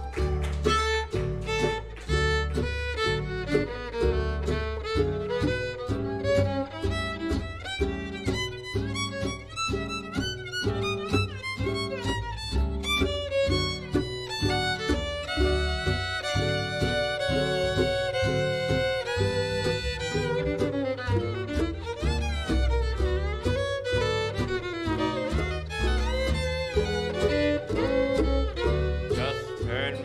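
Western swing band playing an instrumental break, with the fiddle leading over a steady upright bass and rhythm guitar.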